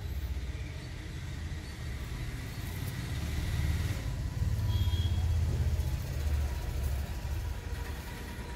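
A low rumble that swells through the middle and eases off near the end, the sound of a passing road vehicle or wind on the microphone.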